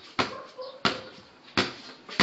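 Basketball dribbled on a hard floor: three hollow bounces with a short ring after each, in an uneven rhythm a little under a second apart.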